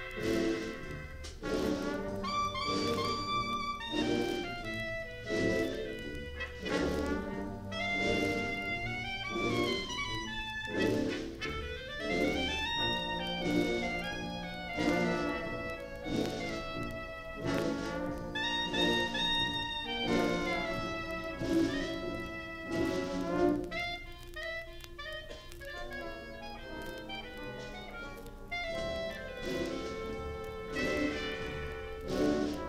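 High school concert band playing a piece with the brass to the fore, heard from a 1955 45 rpm acetate disc recording. The band eases into a softer, thinner passage about three-quarters of the way through, then builds again.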